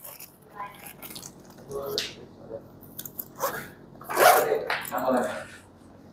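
Quiet, indistinct talk from a few people in a room, with a cough near the end.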